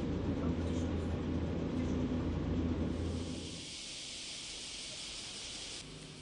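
Low, steady running rumble of a streetcar heard from inside the car. About three and a half seconds in, the rumble stops and a steady high-pitched hiss is left.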